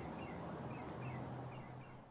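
Faint background ambience with a steady low hum and several faint, short chirps, like distant small birds.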